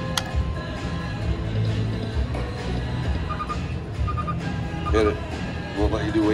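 Casino slot-floor sound: Huff N' Puff video slot game music and electronic jingles over a steady background din of other machines, with a click just after the start and three short beeping tones in the second half as the reels spin.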